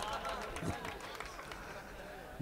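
Faint, indistinct voices: a low murmur of chatter in a lull between amplified speech.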